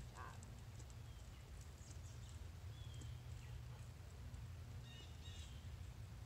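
Faint footsteps of a person and a large dog walking on asphalt over a steady low rumble, with a few short chirps about halfway through and again near the end.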